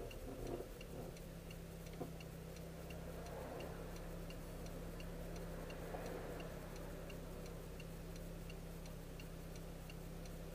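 A car's turn-signal indicator ticking at an even pace, about two ticks a second, heard inside the cabin over a low steady hum while the car waits to turn. A single brief knock sounds about two seconds in.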